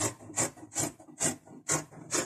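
Fabric scissors cutting through cloth in a steady series of snips, about two a second.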